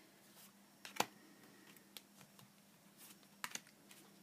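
Tarot cards being handled and laid down on a cloth-covered table: a handful of faint, light clicks and taps, the loudest about a second in.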